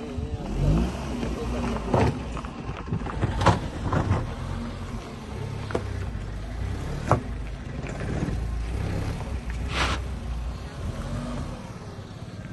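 Tata Tiago hatchback's engine running under load as the car creeps up a rocky dirt slope, a steady low rumble, with several sharp knocks and clicks from the tyres and underbody on the stones.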